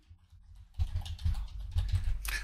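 Typing on a computer keyboard: a quick run of keystrokes that starts a little under a second in, after a short quiet moment.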